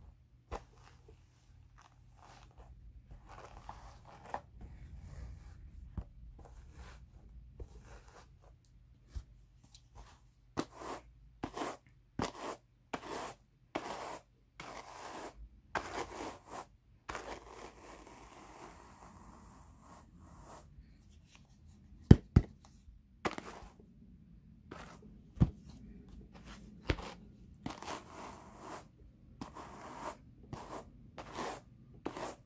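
Wooden hand carders working Jacob wool: irregular, repeated scratchy strokes as one wire-toothed carder is drawn across the other. A couple of sharp knocks come about two-thirds of the way through, the loudest sounds.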